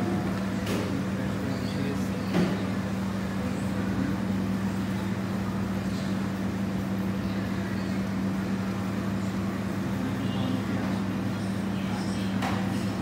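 A steady low hum runs throughout, with a faint knock about two seconds in.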